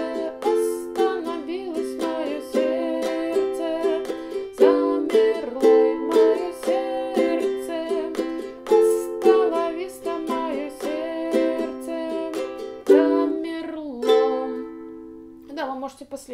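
Ukulele strummed in a down-down-up-up-down-up pattern through the chorus chords C, F, C, G and Am. Near the end it closes on single down-strokes, and the last chord is left to ring out and fade.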